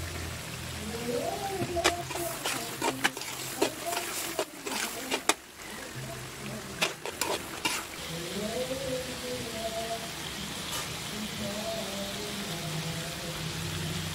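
Chicken, tomatoes and green chilies frying in a metal wok, sizzling steadily while a metal ladle stirs and scrapes. Repeated sharp clinks of the ladle against the pan come mostly in the first half, and the sizzle is steadier later on.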